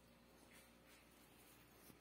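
Near silence: room tone with a few faint, short rustles.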